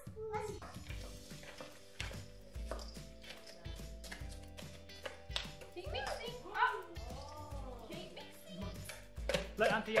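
Background music with held notes and a steady bass, over children's voices and short clicks and taps as wooden spoons stir the mixture in a stainless-steel bowl.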